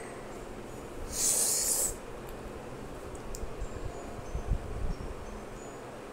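A single short hissing breath, about a second long, heard about a second in over faint room noise.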